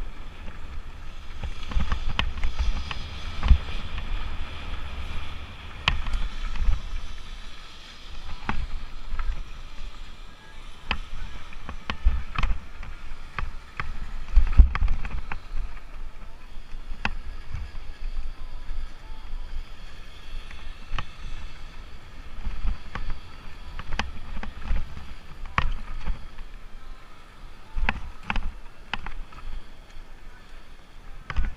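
Lapierre Spicy 327 enduro mountain bike riding downhill over loose gravel and rock, heard from a helmet-mounted GoPro: a constant low wind rumble on the microphone, with frequent sharp knocks and rattles from the bike as it hits stones and bumps.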